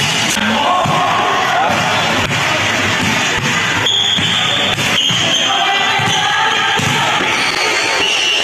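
A basketball bouncing and players moving on an indoor court, with voices, over background music.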